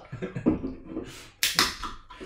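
Men laughing quietly, breathy and through the nose, with a sudden short burst of hiss about one and a half seconds in.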